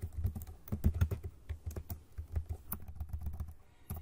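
Typing on a computer keyboard: a quick, irregular run of keystrokes, with a short lull near the end.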